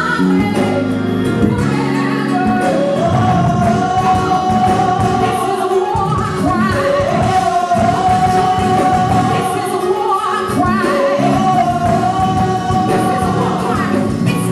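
Live gospel song: a female lead singer holds a few long sustained notes over backing vocalists and a band.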